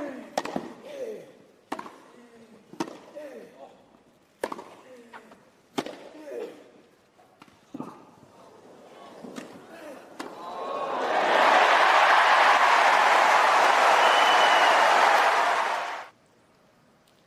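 Tennis rally on a grass court: about six crisp racket strikes on the ball, a second or so apart, several followed by a player's grunt. About ten seconds in, a crowd's loud applause and cheering swells up and holds, then cuts off suddenly.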